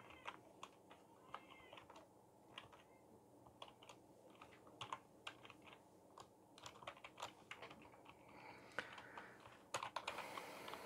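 Faint clicking of computer keyboard keys being typed, in short irregular runs with pauses between.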